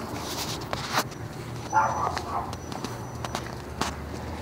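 Footsteps and scattered taps on a hard concrete floor, with a short, louder noise about two seconds in.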